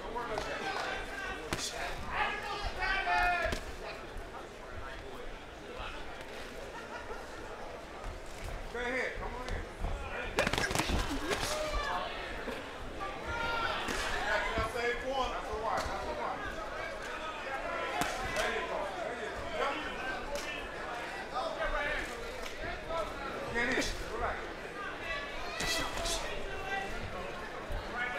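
Boxing arena ambience: voices shouting and calling out throughout, with sharp slaps of gloved punches landing now and then, the loudest about ten seconds in and again near the end.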